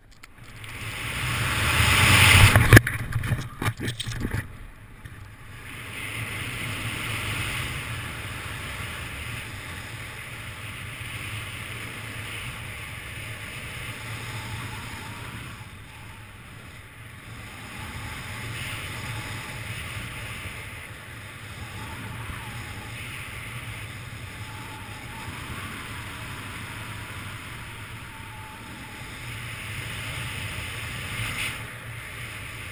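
Wind rushing over a body-mounted camera's microphone in a BASE-jump freefall, building quickly to its loudest about two seconds in. A flurry of sharp snaps follows around three to four seconds in as the parachute opens. Steadier, quieter wind noise follows under the canopy.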